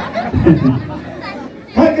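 A man speaking over the chatter of a crowd; a loud shout comes near the end.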